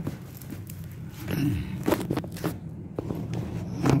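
Phone handling noise close to the microphone: a few scattered knocks and rustles over a faint low steady hum.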